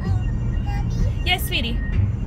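Music from the car's radio with a steady, repeating bass beat, heard inside the moving car's cabin over road rumble, with a brief voice about halfway through.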